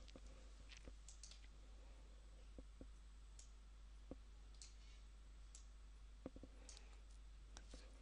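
Near silence: room tone with about eight faint, scattered clicks, of a computer mouse being worked.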